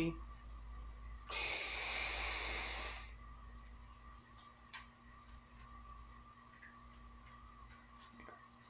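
A long draw on a vape mod with a Beast sub-ohm tank: one breathy hiss of air pulled through the tank, lasting about two seconds, followed by a few faint clicks.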